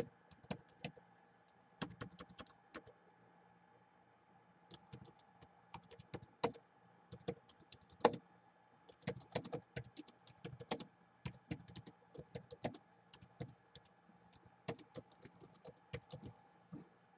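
Typing on a Gateway laptop's built-in keyboard: quick runs of key clicks, a pause about three seconds in, then steady typing for the rest.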